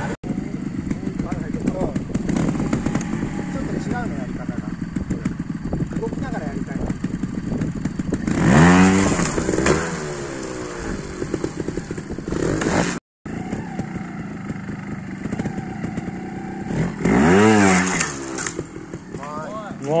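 Trial motorcycle engine running at low revs, with two hard bursts of throttle, about eight seconds in and again near seventeen seconds, the pitch rising and falling each time as the bike climbs a step section.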